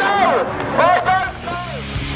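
A man's voice speaking, with crowd chatter behind it.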